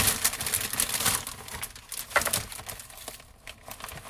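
Crinkling and rustling of bouquet wrapping and stems as the flowers are handled, densest in the first second, then scattered lighter rustles and clicks.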